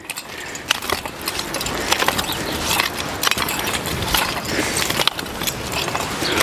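Hand-pushed star-wheel cultivator worked back and forth through loose garden soil, its rotating star tines scraping and rattling with many irregular clicks. It is drilling freshly sown grain down into the soil.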